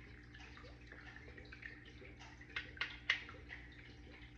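A few light clicks and taps of small plastic cups and containers being handled on a baking sheet, most of them two to three seconds in, over a steady low background hum.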